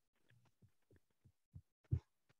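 Near silence on a meeting's audio line, broken by a few faint low thumps, the two loudest near the end.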